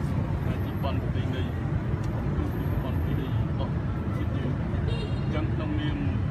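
A voice speaking over a loud, steady low rumbling noise.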